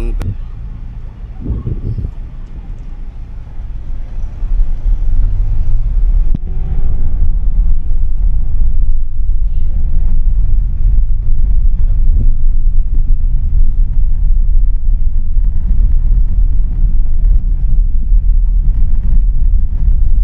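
Low, steady rumble of a vehicle driving along a town street, getting much louder about five seconds in and staying loud.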